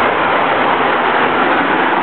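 A car driving past close by: a steady rush of tyre and engine noise.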